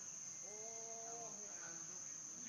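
Steady high-pitched drone of insects, with one held, even-pitched call lasting about a second in the middle.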